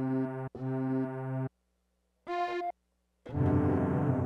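Pitched sampled notes played from the Waves CR8 software sampler with two layered samples sounding together: four notes, each cut off abruptly, with a short, higher note about midway and silent gaps between them.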